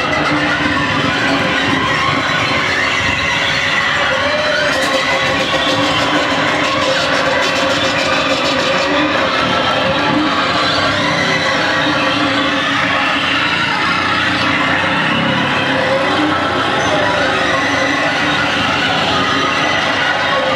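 Live harsh noise music played on electronics through amplification: a loud, unbroken wall of noise with wavering high tones running through it, and a rapid crackle in the highs from about five to nine seconds in.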